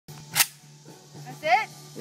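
A single sharp click near the start, then a brief vocal sound from a person about a second later, over a faint steady hum.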